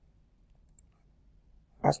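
A single faint computer click about a second in, against near-silent room tone, as a country is picked from a dropdown list on screen.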